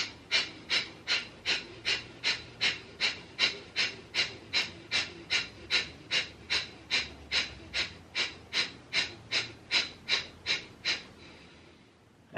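Kapalbhati (breath of fire) breathing: a fast, even train of short, forceful exhalations through the nose, about three sharp puffs a second. They stop about a second before the end.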